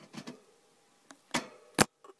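Fingers tapping on a hamster cage: a few sharp clicks, the last and loudest near the end.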